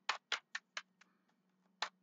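A deck of tarot cards being shuffled overhand, the cards slapping against each other. There is a quick run of about five short slaps in the first second, a pause, then another near the end.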